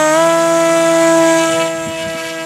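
Electric motor and rear pusher propeller of an RC flying wing held at full throttle for a hand launch: a steady high-pitched whine that fades a little near the end as the wing climbs away.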